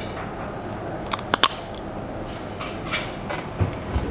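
Hard shell of a tandoor-roasted crab cracking as it is bitten open with the teeth: a few sharp cracks, the loudest a quick cluster about a second and a half in, with smaller ones near the end.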